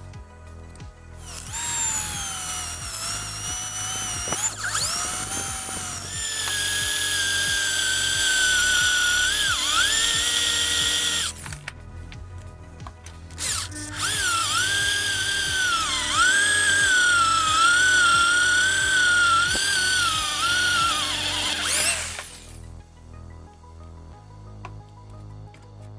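Electric drill whining as it bores into a steel bar, in two runs of about ten and eight seconds with a short pause between; its pitch sags and recovers as the bit bites.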